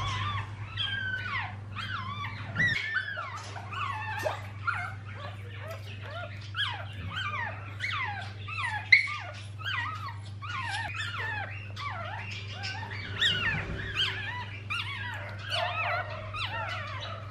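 Newborn poodle puppy squealing in a rapid string of short, high, falling cries, several a second, in pain as its tail is cut for docking.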